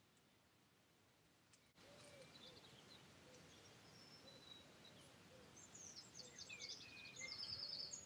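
Faint birdsong: small birds chirping and trilling at several pitches, starting about two seconds in and growing a little busier and louder toward the end.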